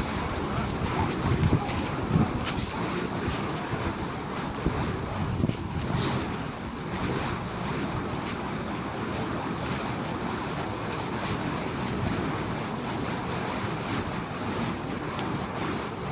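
Wind buffeting the microphone: a steady rushing noise with a few stronger gusts in the first couple of seconds.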